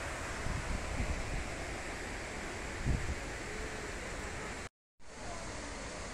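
Steady rushing of a large, high-volume waterfall, with a few low thumps on the microphone in the first second and about three seconds in. The sound cuts out completely for a moment just before five seconds.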